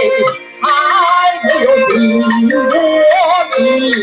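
Woman singing a Huangmei opera (huangmei diao) aria with musical accompaniment. The ornamented melody breaks off briefly about half a second in, then carries on.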